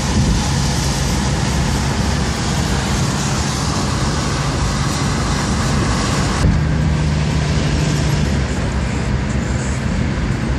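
Steady road and engine noise heard from inside a moving car's cabin on a highway, a continuous rush of tyres and wind over a low engine hum. About two-thirds of the way through the hiss turns abruptly duller.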